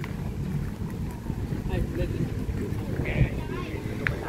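Wind buffeting the microphone as a steady low rumble, with faint voices in the background.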